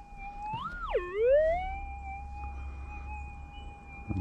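Minelab GPX 6000 metal detector's steady threshold tone, broken about a second in by one target signal: the pitch rises, drops sharply and glides back up to the steady hum, the detector's response to a piece carrying gold.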